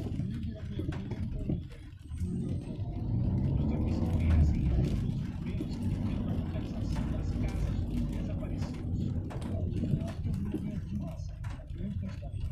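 Inside a car creeping through traffic in heavy rain: a steady low rumble of engine and road, with scattered light ticks of rain and wipers on the windscreen.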